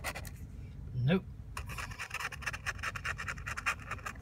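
Plastic scratcher scraping the coating off a scratch-off lottery ticket in rapid short strokes, briefly at the start and then in a fast continuous run from about a second and a half in until just before the end.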